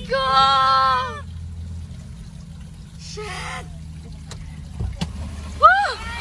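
Low, steady engine drone heard inside a car's cabin as it drives slowly through a flooded street, with water sloshing and splashing under the wheels. A high voice holds a long, wavering note in the first second, and another voice rises near the end.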